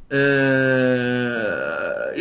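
A man's long, drawn-out hesitation 'ehh', held on one steady pitch for about a second and a half before trailing off.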